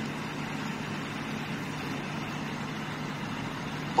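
Steady low hum over an even background hiss, unchanging throughout.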